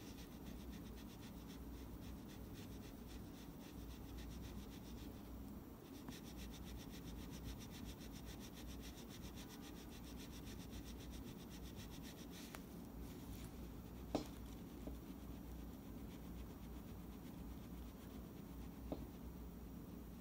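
A cloth rubbed quickly back and forth over a small guitar screw held between the fingertips, polishing its edges smooth: a faint, fast, scratchy rubbing that fades out after about twelve seconds. A single sharp click follows a couple of seconds later.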